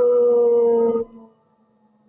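Whining tone of audio feedback on a remote video-conference link, several pitches held together and sliding slightly down, cutting off about a second in and leaving near silence.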